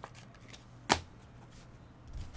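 Trading cards being handled, with one sharp snap of card stock about a second in and a few fainter clicks, over a faint low hum.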